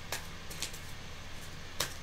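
A tarot deck being handled by hand in a quiet room with a low steady hum: two brief clicks of the cards, one at the start and one near the end.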